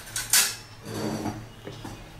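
Kitchen dishes and utensils clinking: one sharp clink about a third of a second in, then a few softer knocks and handling noises.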